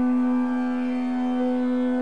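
Harmonium holding one steady drone note, rich in overtones.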